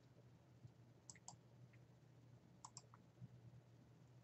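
Faint computer mouse clicks, in two quick pairs about a second and about 2.7 seconds in, over a faint low hum.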